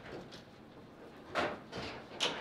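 Foosball table in play: after a quiet second, a sharp clack of the ball and plastic players against the rods and table about a second and a half in, then a lighter knock just before the end.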